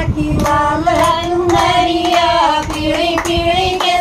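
A group of women singing a Haryanvi folk bhajan in long, drawn-out notes, clapping their hands in a steady rhythm.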